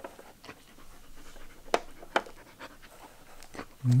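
A Samoyed breathing hard and sniffing as it noses at a plastic Trixie puzzle board, with a few light clicks of the plastic pieces. A voice comes in at the very end.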